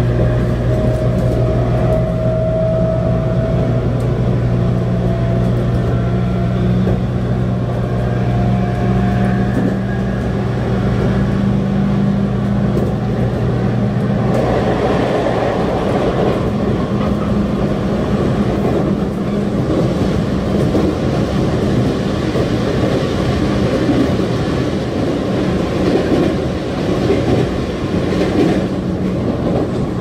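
Inside a JR Kyushu 811 series electric train under way: a steady hum with a whine that slowly rises in pitch through the first third, then from about halfway a louder, rougher rumble of wheels on rails as the train crosses a steel girder bridge.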